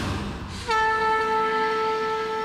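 A conch shell (shankh) blown in one long, steady note that starts under a second in with a short upward slide at the attack.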